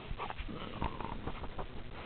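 Wolfdog making small close-up noises: short sniffs and shuffling sounds, with a brief faint whine about a second in.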